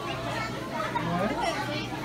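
Indistinct chatter and children's voices in a busy room, with no one voice standing out.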